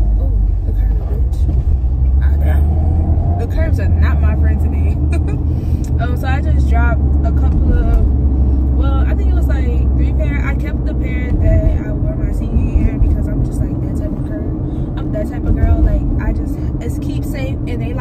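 Low road and engine rumble of a car heard from inside the cabin while driving, under a woman's talking; the rumble eases off about eleven seconds in.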